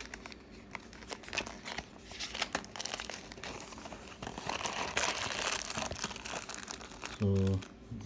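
Clear plastic packet and cardboard box crinkling and rustling as the packet is drawn out of the box, in irregular crackles that grow denser about five seconds in.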